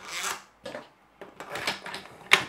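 3D-printed plastic parts scraping and rubbing as they are handled and slid over a steel rod, in several short bursts.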